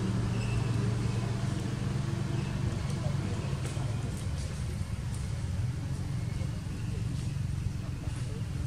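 Steady low rumble with indistinct voices in the background and a few light clicks in the middle.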